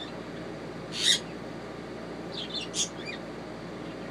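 Young toco toucan calling: one short harsh call about a second in, then a quick cluster of shorter calls a little before the three-second mark.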